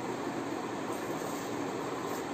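Steady rushing background noise with no distinct events, even in level throughout.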